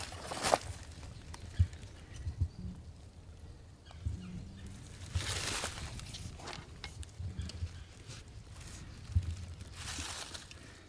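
Quiet rustling in dry leaf litter with a few sharp light clicks, the loudest within the first two seconds, and a longer rustle about five seconds in.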